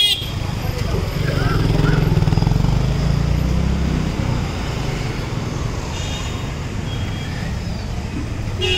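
Night street traffic of auto rickshaws and motor scooters: a vehicle engine passing close, loudest about two to four seconds in, with short horn toots at the start and again faintly later on.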